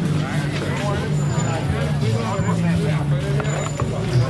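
Outdoor street ambience: people nearby talking over a steady low hum of traffic, with a couple of sharp clicks near the end.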